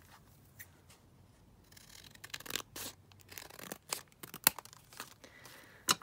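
Scissors cutting paper: a run of irregular snips and short paper rustles starting about two seconds in, quiet overall, with the sharpest snips near the end.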